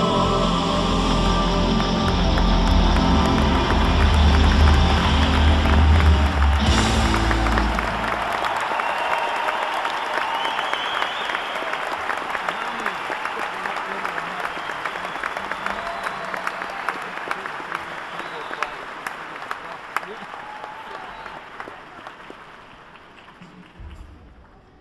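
A live band's closing chord rings out with a heavy bass note and stops about seven seconds in. A concert audience applauds, and the clapping slowly dies away.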